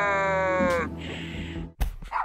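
Cartoon soundtrack: a long held, slightly falling note over steady background music, ending just under a second in. It is followed by a short hiss and a single sharp pop near the end.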